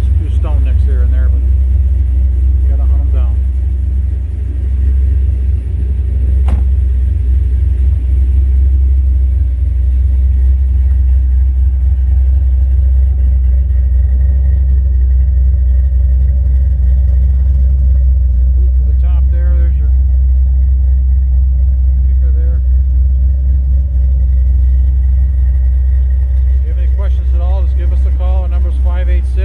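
A 2005 Ford Mustang GT's 4.6-litre V8 idling: a steady, deep, low rumble.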